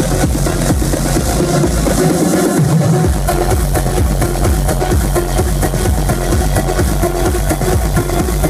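Loud progressive house dance music played live over a club sound system, with a steady beat. The bass drops out briefly about two seconds in and comes back a second later.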